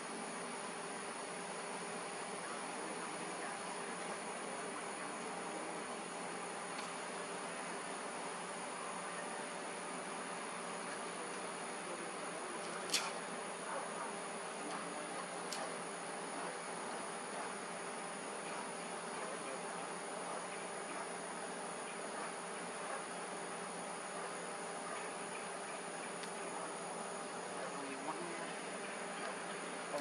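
Steady outdoor insect chorus with a constant hum, broken by two short clicks about halfway through, the first one the loudest sound.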